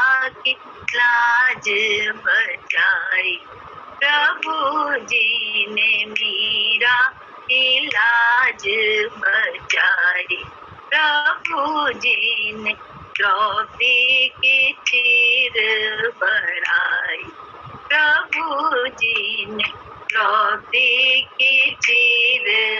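A woman singing a Hindi devotional bhajan in short phrases with brief pauses, her pitch wavering on the held notes.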